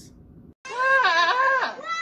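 A goat screaming: one long, wavering, loud cry starting about half a second in, then a second, shorter and higher cry near the end.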